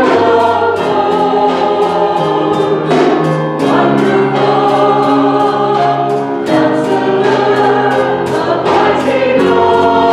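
A mixed church choir singing held chords that change every second or two, over a steady beat.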